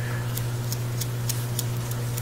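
Steady low electrical hum with faint, evenly spaced ticks about three times a second.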